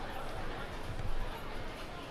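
Busy street ambience: indistinct chatter of people nearby over steady city noise, with a few low thuds about a second in.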